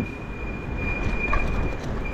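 Electric bike riding on a paved and cobbled street: a low, even rumble of tyres and wind noise, with a thin steady high-pitched whine held throughout.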